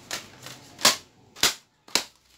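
Three sharp clicks about half a second apart, with a fainter one just at the start.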